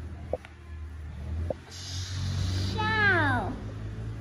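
A child's voice: a hissing 'sh'-like sound about two seconds in, then one drawn-out vocal sound falling in pitch, over a low steady hum.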